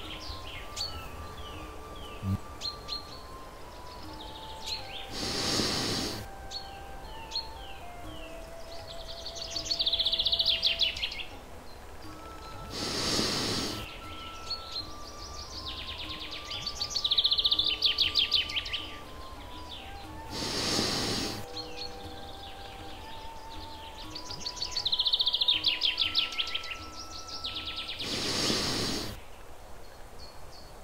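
Relaxation background track: a slow, soft melody of held notes with recorded birdsong, the bird trills repeating in a loop. A brief whoosh swells and fades about every seven and a half seconds.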